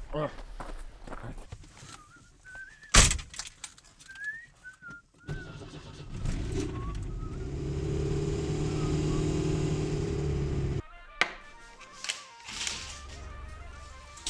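A loud bang about three seconds in, then a car engine running steadily, heard from inside the car, which cuts off abruptly after about eleven seconds. Light clicks of plastic game tiles being set on a rack follow.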